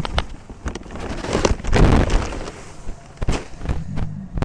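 Dry vermiculite being poured from a large bag into a five-gallon bucket: a rush of granules that is loudest about two seconds in, mixed with the bag rustling and several sharp clicks and knocks.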